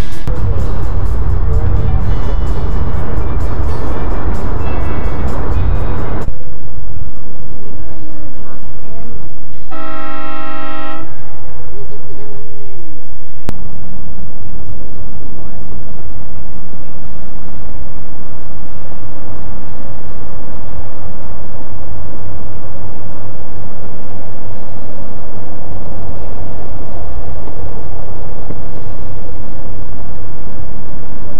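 Background music for about six seconds, then a single boat horn blast of about a second, and after that a boat engine running with a steady low hum.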